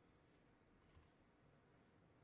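Near silence: faint room tone, with one soft computer-mouse click about a second in.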